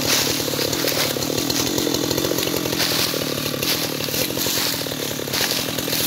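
Husqvarna two-stroke chainsaw engine running at a steady speed, not cutting.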